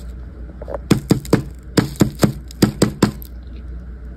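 Cornstarch chunks crunching and cracking: nine sharp crunches in three quick groups of three.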